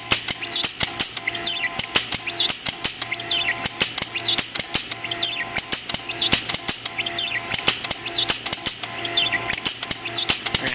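MakerBot 3D printer with a Frostruder frosting extruder at work: its stepper motors whine in tones that start, stop and glide up and down as the head moves. Rapid clicks run through it several times a second.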